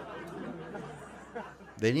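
Indistinct chatter of several people talking together, growing fainter, with one voice breaking in loudly near the end: speech only.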